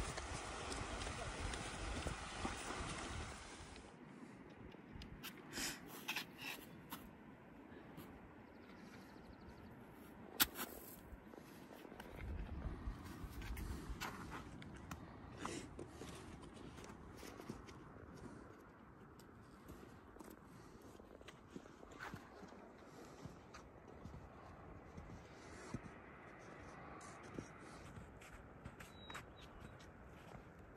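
Faint footsteps and gear rustle of people hiking up a trail, with scattered sharp taps. It is louder for the first few seconds, then quieter.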